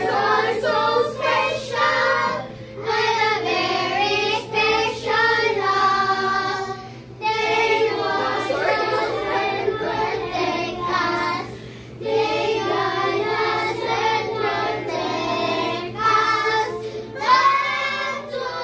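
A group of children singing an action song together, phrase after phrase with short breaks between lines.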